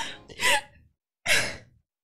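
A woman's breathy sighs and half-laughs while tearful: two short exhalations less than a second apart.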